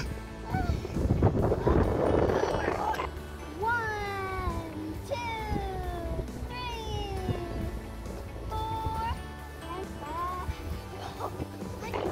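Background music with a run of sliding tones that fall in pitch, about one a second. Near the end come a few shorter rising ones. A rushing noise comes first, in the opening seconds.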